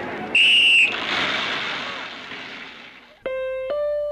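A single short, shrill whistle blast, followed by a rush of noise that fades away over about two seconds. Near the end, keyboard music starts, its notes climbing one after another.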